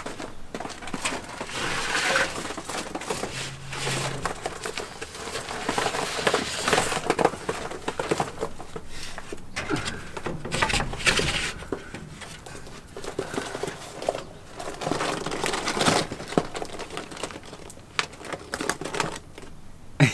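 Irregular rustling with scattered clicks and light knocks: hands working a transport box and the wooden coop's door as quail are moved into the coop.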